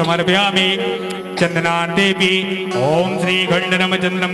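Devotional mantra chanting: a single voice sings in long, gliding melodic phrases over a steady drone.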